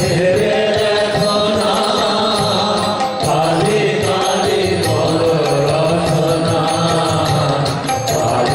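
Kali kirtan: male voices chanting a devotional song to harmonium and violin accompaniment, in long held, gently gliding phrases.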